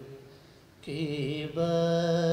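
A man reciting a naat, a devotional poem in praise of the Prophet, sung solo without accompaniment into a microphone. After a short breath pause he comes back in with a wavering phrase, breaks briefly, then holds one long steady note.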